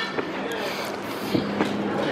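Outdoor city noise with people's voices in the background and a few light knocks.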